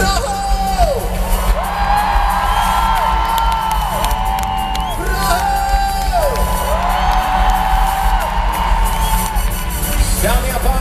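Live band playing loudly in an arena with strong bass, over which a run of long, wordless held sung notes rises and falls, about a second or more each, with the crowd joining in.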